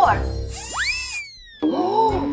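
Cartoon sparkle sound effect over background music: a bright, high shimmer with a tone that swoops up and then slides slowly down, about half a second in. The music drops out for a moment and comes back near the end.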